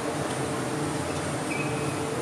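Steady low hum and hiss of a large sports hall's ventilation, with a brief high squeak about a second and a half in, typical of a shoe sole on the wooden court.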